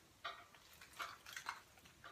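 Faint clicks and rustles as a 1-inch Hot Tools curling iron is twisted into a section of hair: about five small ticks spread over two seconds.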